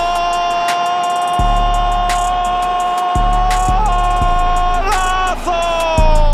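Background beat music with regular bass drum hits and one long held high note over them, which wavers and bends down near the end.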